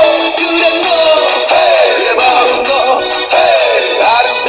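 A pop song with a gliding, electronically processed lead vocal playing loudly and steadily over the backing music.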